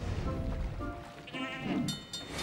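Cartoon goat bleating, one wavering call a little past the middle, over background music.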